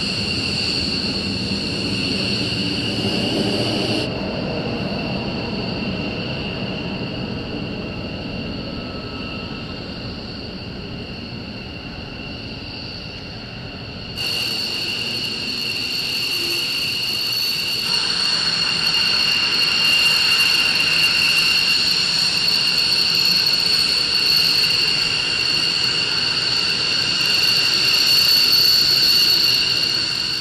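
F-15 fighter jets' twin Pratt & Whitney F100 turbofans running at taxi power: a steady piercing whine with two high tones over a rumble. The sound drops abruptly to a quieter, duller level about four seconds in and jumps back louder about fourteen seconds in.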